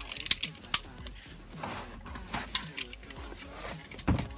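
An exacto knife cutting a piece off a rubber tube on a work surface: two sharp clicks in the first second, then faint scraping and handling noises.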